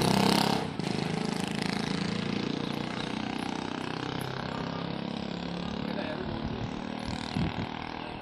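A steady low mechanical drone with a fast flutter, like a motor running, slowly fading over several seconds. Talk and laughter cut off less than a second in.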